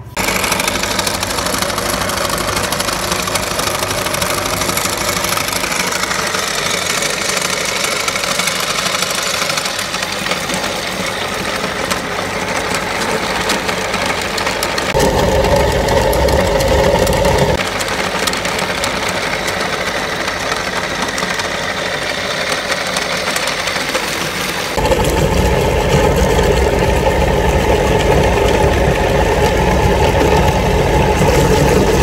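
Motor-driven cast-iron meat grinder running steadily. It grows louder and deeper from about fifteen to seventeen seconds, and again from about twenty-five seconds on, as raw chicken is forced through the cutting plate.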